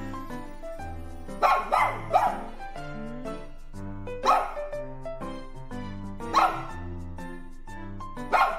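Miniature poodle barking: three quick barks about a second and a half in, then single barks around four and six seconds in. They are alert barks at the sound of approaching footsteps, heard over background music.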